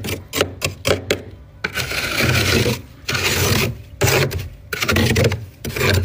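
Fingers scraping thick, powdery frost off the inside of a freezer: a quick run of short crunchy scratches, then four longer rasping strokes.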